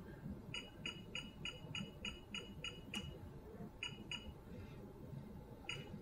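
Control-panel key beeps of a Richmar Winner EVO CM4 ultrasound and electrotherapy unit: a run of about eight short, high beeps, about three a second, as the ultrasound intensity is stepped up from zero, then a click, two more beeps and one last beep near the end. The beeps are faint.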